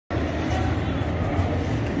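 Steady low rumble of outdoor urban background noise, with faint indistinct voices.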